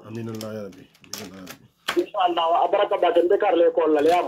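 A man talking, quietly at first and then louder from about halfway through, with two sharp clicks in the first two seconds.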